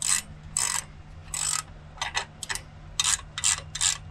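Ratcheting wrench clicking in short runs as it tightens the 16 mm nut on the upper mount of a new shock absorber. The runs come roughly every half second at first and quicken to two or three a second toward the end.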